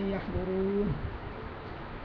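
A person's voice holding a drawn-out vowel at an even pitch for about half a second, ending about a second in, then low room noise.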